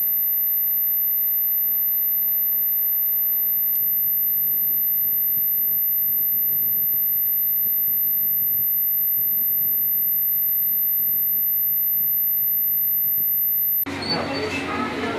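A steady, very high-pitched electronic tone with fainter steady tones beneath it, unchanging in level, cutting off abruptly just before the end.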